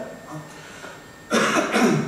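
A man coughs into a table microphone about a second and a half in: a short, loud cough in two quick bursts, after a moment of quiet.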